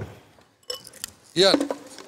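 A man's voice speaking briefly, after a near-quiet pause broken by a few faint light clicks.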